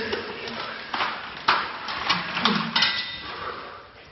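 Aftermath of a bag of ice water dumped over a man: scattered sharp knocks and clatters with water dribbling, and a short laughing or gasping voice midway, all dying away toward the end.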